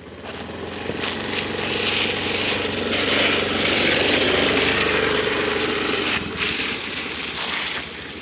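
Small gearless scooter engine pulling away and running, a steady drone that builds over the first two seconds and eases off near the end.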